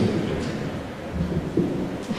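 Microphone handling noise: low rumble and rustle from a handheld microphone being held and moved near its stand.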